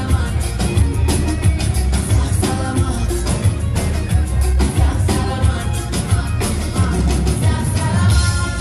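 Loud live band music with drums and heavy bass, and a woman singing into a handheld microphone.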